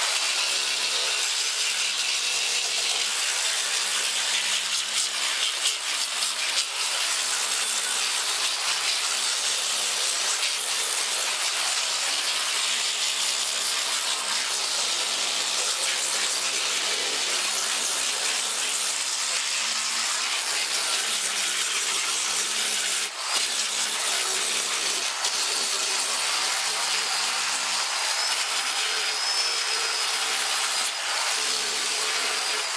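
Large right-angle disc sander grinding wood off a carved mandolin top, a steady whirring, scraping noise as it rough-carves the top down toward its drilled depth holes. The noise dips briefly once, a little past the middle.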